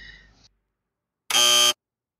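Buzzer sound effect: one harsh, steady tone lasting about half a second, starting about a second and a half in. It is a 'wrong/rejected' cue.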